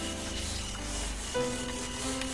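Whiteboard eraser rubbing across the board, a soft hiss of wiping strokes, over background music with long held notes.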